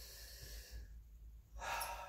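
A man's faint breathing, with a louder intake of breath near the end.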